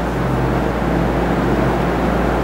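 Steady background hiss with an even low hum, unchanging throughout.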